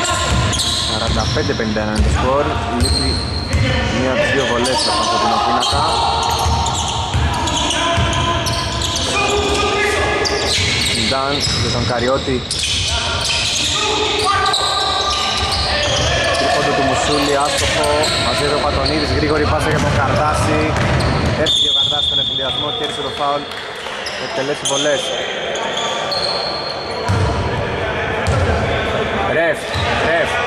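A basketball bouncing on an indoor court as players dribble and pass during a game, with players' voices calling out. The sound echoes in a large hall.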